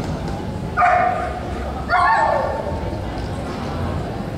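A dog barking twice, about a second apart: a short bark, then a longer one that falls in pitch.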